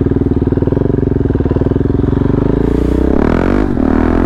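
KTM Duke's single-cylinder engine running steadily under way, heard from the rider's seat. Near the end the revs dip and climb again.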